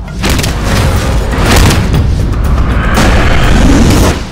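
Trailer sound design: deep booming hits with several sharp impacts over dramatic music, loud throughout and dropping away at the end.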